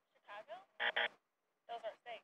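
Short, choppy bursts of a voice broken by silent gaps, with two brief buzzy blasts about a second in.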